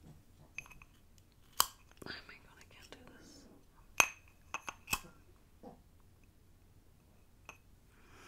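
A lighter being clicked to light a candle inside a ribbed glass jar held close to the microphone, with sharp clicks and small glassy clinks scattered through; the loudest come about one and a half, four and five seconds in.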